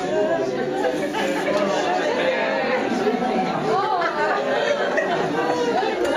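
A group of people all talking at once, with many overlapping conversations mixing into a steady chatter.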